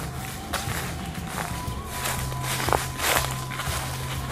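Footsteps crunching through dry fallen leaves, a few uneven steps. A faint steady tone comes in underneath about halfway through.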